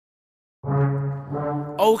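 A low, held brass-like horn note from a rap beat's intro, starting about half a second in and dipping briefly before sounding again.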